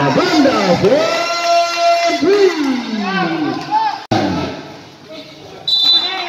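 People shouting and calling out at a basketball game, with long drawn-out calls that rise and fall in pitch. The sound breaks off for an instant about four seconds in.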